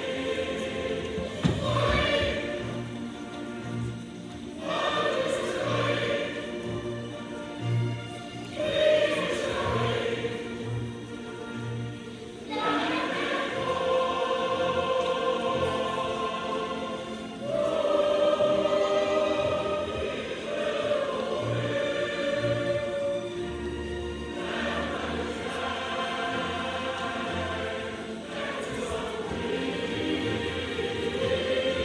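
A group of schoolchildren singing together, holding long notes that change every few seconds, over a musical accompaniment with a pulsing bass line.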